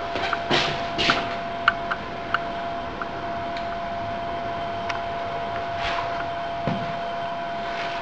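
Steady machinery drone with a constant mid-pitched whine, with a few light ticks and taps scattered over it.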